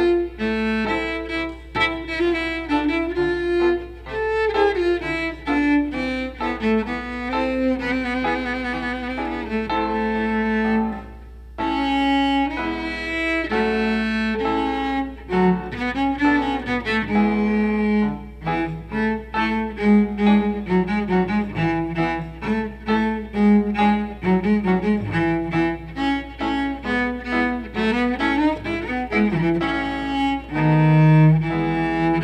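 Cello playing a melody with grand piano accompaniment, a light classical duet, with a brief pause about eleven seconds in.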